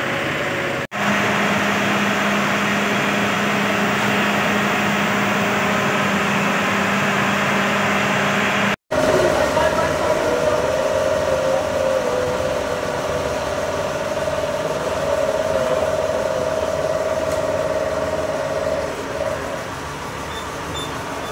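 Fire engine running with a steady hum amid a crowd's indistinct voices. The sound cuts out briefly twice, about one second and about nine seconds in.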